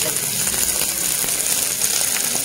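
Cubed boiled potatoes sizzling steadily in hot oil with fried cumin seeds in a nonstick frying pan.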